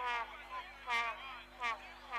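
A man's voice speaking in short phrases, most likely the match commentary.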